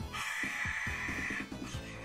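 A man making a raspy, hissing crowd-roar noise with his mouth, mimicking a cheering crowd, for about the first second and a half. Background music with a steady beat plays under it.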